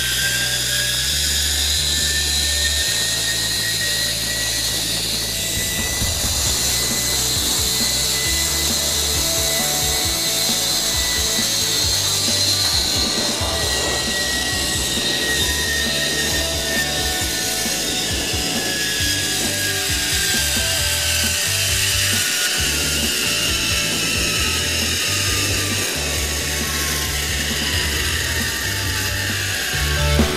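Zipline trolley pulleys running along a steel cable, giving a whirring whine. Its pitch climbs over the first several seconds as the rider gathers speed, holds, then falls steadily through the second half as the trolley slows.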